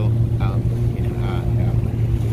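Boat engine, likely an outboard motor, running at a steady speed with a constant low hum as the boat moves over the water.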